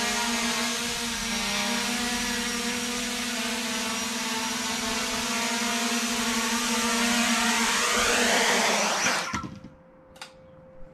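8-inch FPV quadcopter, four Xing 2806.5 1800KV brushless motors spinning 8x4.5 three-blade props, flying low with a steady high whine. Near the end the pitch and loudness rise, then the motors cut off abruptly about nine seconds in.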